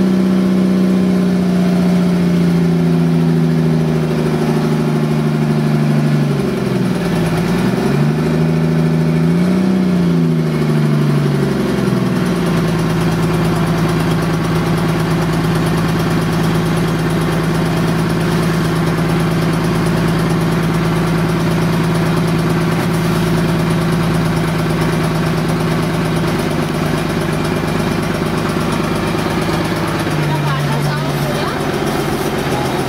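Motorized outrigger boat engine running under way, a loud steady drone. Its pitch drops and makes a couple of short dips and rises in the first third, then holds steady from about twelve seconds in.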